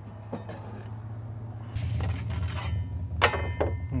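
Clinks and scrapes of a metal spatula as pizzas are lifted off cedar planks on a ceramic grill, over a low motorcycle-engine rumble from Harley-Davidsons that grows louder a little under two seconds in.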